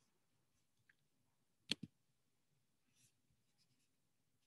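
Near silence, then a single computer mouse click, its press and release heard as two quick clicks, a little under two seconds in, as the slide show is exited.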